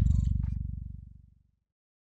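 The low, rapidly pulsing rumble at the tail of a logo intro sound effect, fading away over about a second and a half into silence.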